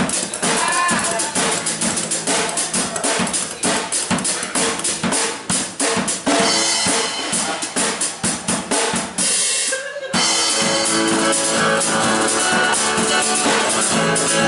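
Live drum kit played with sticks in fast, busy strokes on snare, bass drum and cymbals over an acoustic band. The drumming breaks off briefly just before ten seconds in, then the band comes back in with acoustic guitar and lighter drums.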